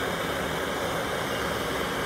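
Blowtorch flame burning steadily against a magnesium oxide board: an even, unbroken hiss.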